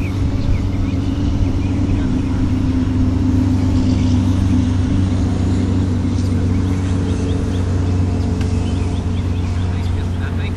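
A motor running steadily with a low, even hum.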